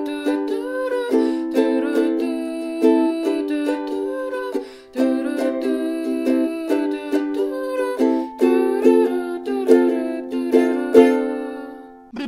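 Ukulele strummed in a steady rhythm of chords. The last, loudest strum comes about a second before the end and rings out, fading away.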